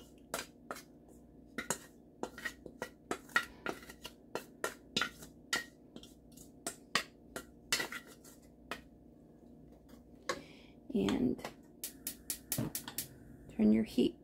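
Bamboo spatula scraping and knocking cooked ground beef out of a perforated metal colander into a skillet: a run of sharp, irregular clicks and scrapes, a few per second.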